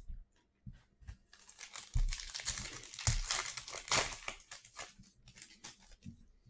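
Foil trading-card pack wrapper crinkling and tearing as the pack is ripped open, a dense crackle from about a second in until near the end, with a couple of soft thumps.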